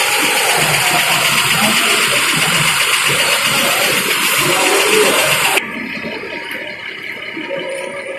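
Loud, noisy outdoor ambience with music in it, which drops off abruptly about five and a half seconds in to a quieter background.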